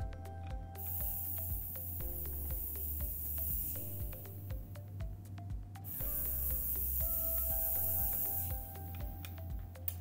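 Cryotherapy pen spraying its gas onto skin lesions in two hissing bursts, each about three seconds long and about two seconds apart: one freeze for each of two lesions. Background music plays throughout.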